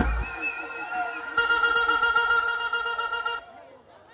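Held horn-like tones over the stage sound system, joined about a second and a half in by a brighter, buzzier horn blast that lasts about two seconds and cuts off suddenly.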